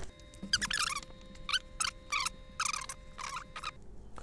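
Flat paintbrush dragging varnish across a canvas: a series of short squeaky strokes, about two a second.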